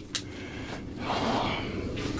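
A short click, then a person breathing out near the microphone.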